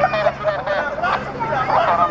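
Several people talking at once in unintelligible chatter, over a faint low steady hum.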